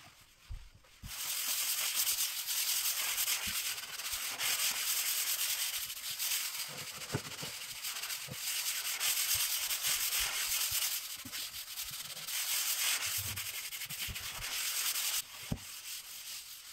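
A hand scrubber scrubbing a laminate kitchen worktop in quick back-and-forth strokes, a steady scratchy rubbing that starts about a second in and stops near the end.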